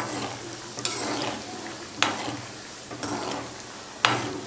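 Peanuts sizzling in hot oil in a metal kadhai, stirred in strokes with a perforated metal ladle that scrapes against the pan. There is a sharp clink of the ladle on the pan about two seconds in.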